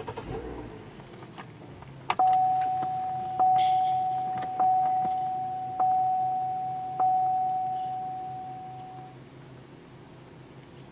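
A click, then a 2004 Cadillac CTS's dashboard warning chime sounding five times, about a second apart, each ding fading away, with the ignition switched on and the warning lamps lit.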